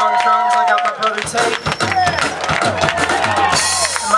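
Electric bass and drum kit playing a short live passage: a low held bass note comes in about a second in, with drum and cymbal hits over it.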